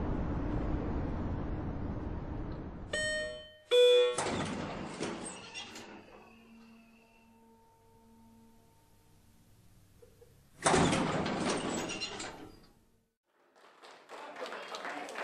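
Steady outdoor noise, then elevator chimes ringing twice a little after three seconds in, and the steel elevator doors sliding with a rush of noise. After a stretch of faint hum, the doors slide again with a loud rush near the end.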